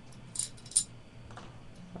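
A couple of brief light metallic ticks from a steel screw handled against a 13-gauge steel security strike plate, with a fainter tick later.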